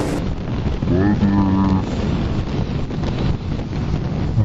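Wind buffeting a helmet-mounted microphone on a moving motorcycle, over a low engine and road rumble. A short pitched tone that rises and then holds briefly sounds about a second in.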